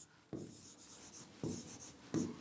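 Faint strokes of a pen writing a word on a board: a few short scratches and taps.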